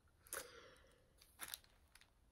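Near silence, broken by two faint short rustles, one about a third of a second in and a briefer one about one and a half seconds in: a hand moving over parchment paper laid as a cover sheet on a diamond painting canvas.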